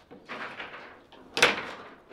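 Table football (foosball) in play: the rods and ball rattle and knock, with one sharp, loud crack about one and a half seconds in.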